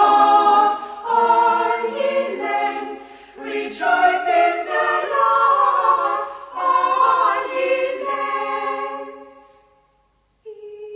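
A choir singing without accompaniment, in phrases with a short break about three seconds in, fading out near the end.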